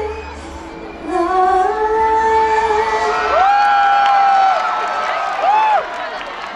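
Female K-pop group singing live over a dance backing track. About a third of the way in the beat drops out, long high notes are held, and the crowd cheers and screams near the end as the song finishes.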